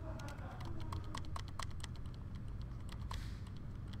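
Computer keyboard and mouse clicking: a run of irregular, quick taps over a low steady hum.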